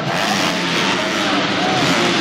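Motocross bike engines revving as they race around an indoor arena dirt track, over a steady loud arena din.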